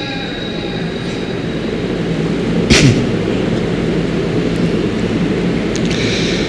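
Steady rumbling background noise of the gathering, picked up through the stage microphones while the reciter is silent, with one short sharp sound a little before the middle.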